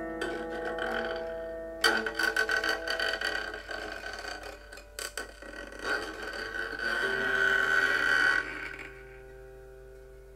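Autoharp being strummed and plucked, its chords ringing on between strokes. There are several strums, the sharpest about two seconds in, and the strings ring out and fade over the last second or so.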